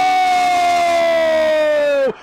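A Brazilian football narrator's long drawn-out shout, one held vowel slowly falling in pitch, calling a penalty in a shootout that did not go in.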